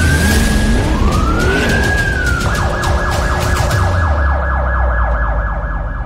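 Police siren sound effect: two long rising-and-falling wails, then a fast warbling yelp from about two and a half seconds in, over a steady low drone.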